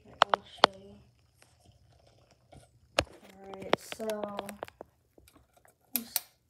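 A few sharp clicks and knocks as a small lamp is handled, then, about three seconds in, a child's voice murmuring for a second or so.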